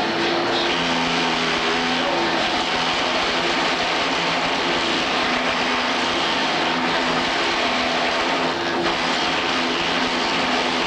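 Wooden-shoe copying lathe running: its fast-spinning knives carve a blank of fresh green wood into a clog by tracing a model shoe. The sound is a steady, loud machine whir with a low hum that wavers slightly in pitch.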